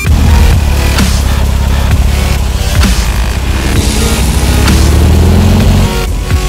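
The air-cooled 2027cc flat-four engine of a 1967 Volkswagen Beetle running, its pitch rising over the last two seconds as it accelerates, mixed with dubstep music and its drum hits.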